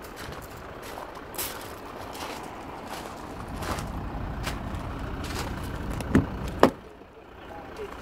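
Footsteps crunching on gravel with a low rumble building underneath, then two sharp clicks a little after six seconds in as a car's front door handle and latch are released and the door is opened.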